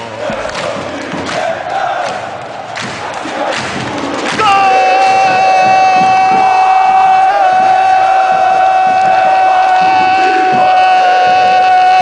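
A Brazilian radio football narrator's goal cry: one long, unbroken, high held note. It starts about four seconds in, after a few seconds of crowd noise, shouting and thumps.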